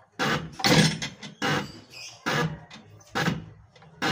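Diesel injector nozzle on a hand-lever pop tester, firing in five short bursts of spray a little under a second apart as the lever is pumped. The nozzle is opening at its set pressure of 140 and misting and chattering, the sign that it is atomising properly.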